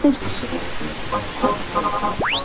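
Old radio broadcast sound: a faint, muffled voice in short fragments over a steady hiss, with a thin high whistle slowly falling in pitch.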